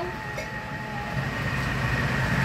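Thermomix food processor running at speed 3, its blade blending watermelon and liquid into juice with a steady motor hum.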